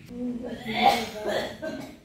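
A person coughing, in rough bursts loudest about a second in, with faint voices around it.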